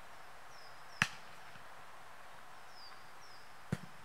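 Two sharp thumps of a soccer ball being kicked, about a second in and again near the end, over a faint outdoor background with small birds chirping.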